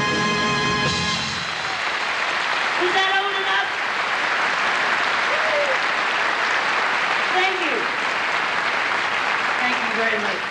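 The band's last held chord ends about a second in, then a concert audience applauds steadily, with a voice or two heard briefly over the clapping.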